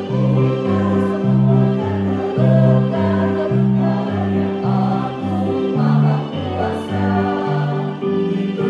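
A small mixed choir singing a hymn together with instrumental accompaniment, over a bass line that steps to a new note about twice a second.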